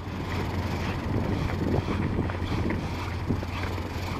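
Steady outdoor wind noise on the microphone over a constant low hum, with faint footsteps on a paved path.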